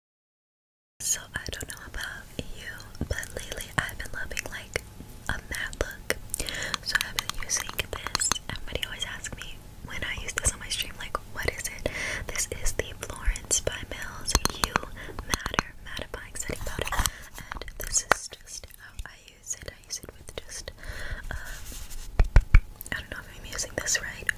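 Close-mic ASMR whispering mixed with many light taps and clicks from fingernails and handling of a plastic makeup powder compact. It starts after about a second of silence.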